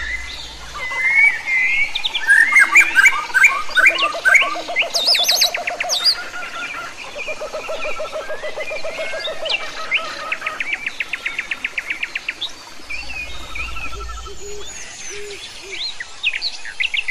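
Several birds singing and chirping over one another, with rapid trills and quick rising and falling whistles, busiest in the first few seconds.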